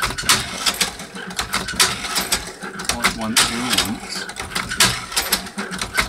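Hand-cranked drum cherry pitter being turned: its metal mechanism clacks in a loose rhythm, about two to three sharp clacks a second, as the drum indexes and the pitting needles work.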